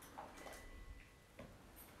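Faint ticks of a utensil against a plate as scrambled egg and tomato is spread on it, a few light clicks spaced irregularly.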